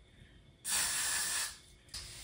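One spray of aerosol hairspray: a hiss that starts about half a second in and lasts just under a second.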